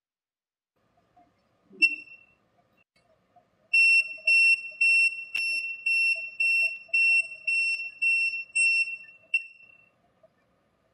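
Non-contact voltage tester pen beeping: one short high beep about two seconds in, then from about four seconds a fast train of the same beep, roughly two a second. This is its warning tone for detected AC voltage, from a test lead carrying 12 V at 60 Hz.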